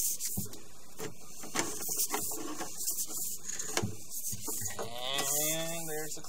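Sewer inspection camera and its push cable being pulled back through the pipe, rubbing and scraping with scattered clicks.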